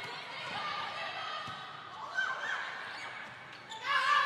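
Indoor volleyball rally: a few sharp hits of the ball against hands and arms over the steady murmur of an arena crowd.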